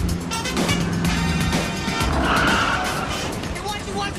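Car tyres screeching as a taxi brakes hard, a loud squeal lasting about half a second a little over two seconds in, over city traffic and background music.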